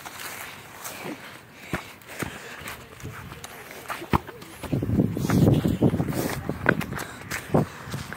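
Footsteps on grass and a few sharp knocks of a soccer ball being kicked, with a stretch of rustling noise a little past halfway.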